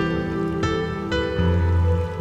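Slow, gentle solo piano music, single notes struck about twice a second and left to ring, with a deep bass note coming in about one and a half seconds in.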